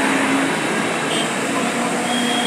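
Road traffic noise: a steady rush of vehicles with a faint engine hum.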